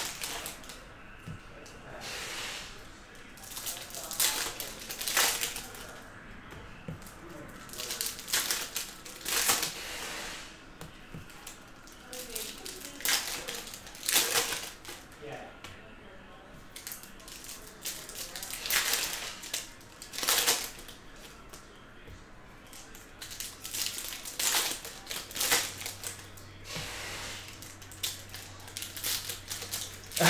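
Donruss Optic trading cards being flipped through and slid against one another by hand, a short papery swish every second or two.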